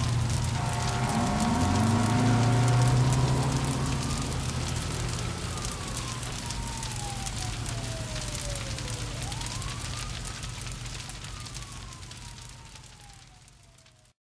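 A fire crackling over a low steady rumble, while a siren wails in two slow sweeps that each rise and then fall away. Everything fades out near the end.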